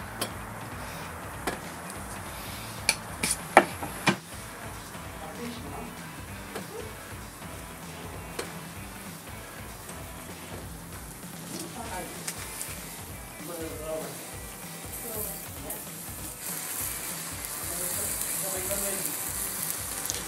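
Buttered bread toasting on a wire grill over a charcoal brazier, sizzling steadily as the butter meets the heat, with a few sharp clicks in the first seconds. The sizzle grows louder and hissier over the last few seconds as melted butter drips onto the hot coals and smokes.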